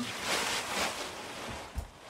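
Rustling of a hazmat coverall's stiff synthetic fabric as it is handled and pulled on, loudest at first and then fading, with a low thud near the end.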